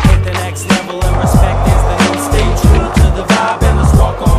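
Hip hop track with a steady bass line and drum beat, mixed with a skateboard rolling and clacking on smooth concrete.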